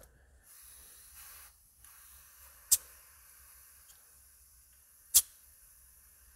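Brief faint hiss of compressed air let off from the airline fitting on an oil pressure sensor, dropping it to zero pressure. It is followed by two sharp clicks about two and a half seconds apart.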